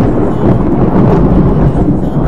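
Loud, continuous rumbling thunder of a thunderstorm.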